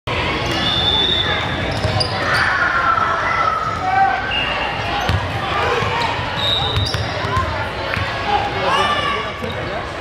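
A basketball bouncing on a hardwood gym floor amid sneakers squeaking and voices calling out, all echoing in a large hall.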